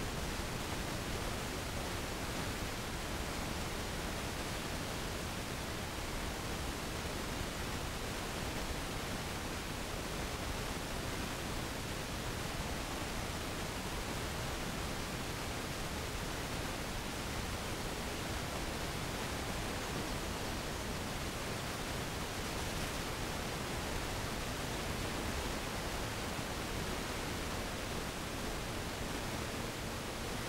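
Steady, even hiss of recording noise, with no other sound standing out.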